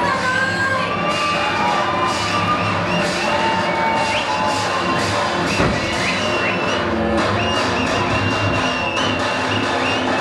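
Loud dance music played over a hall sound system while the audience cheers and shouts along, with high whoops rising and falling over the music. There is one sharp thud about halfway through.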